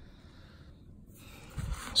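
Quiet room tone. Near the end comes a short rustle as a stack of foil booster packs is picked up and handled.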